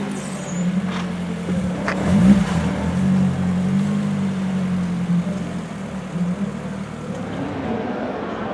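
A sports car's engine running at low speed as the car rolls past, a steady low drone that rises briefly about two seconds in and fades out after about six seconds.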